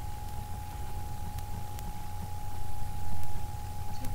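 Room noise: a steady low rumble with a faint constant high tone, swelling louder for about a second near the end.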